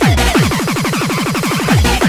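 Makina, a fast, hard style of electronic dance music, playing from a DJ mix. A steady fast kick drum with falling pitch sits under a dense, busy synth pattern.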